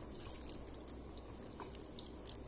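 Faint wet rustling and squelching of sliced raw onions being rubbed by hand in a bowl of water to wash them, over a low steady hum.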